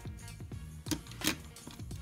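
Soft background music, with two light clicks about a second in from a small die-cast toy car being tipped and set down on a tabletop.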